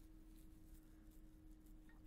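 Near silence: faint room tone with a thin steady hum.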